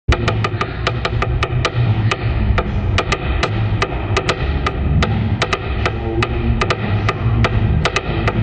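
A drumstick tapping out a quick, clicking rhythm on wood, about four or five sharp strokes a second, over a low bass line that moves in steps.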